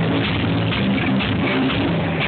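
Live blues-rock band playing loud: electric guitar and bass guitar over drums, with the bass moving between notes.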